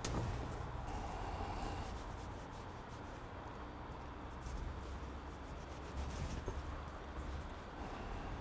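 Faint rubbing and rustling of hands working small tarred twine around a natural-fibre rope while putting on a seizing, with a few small scrapes.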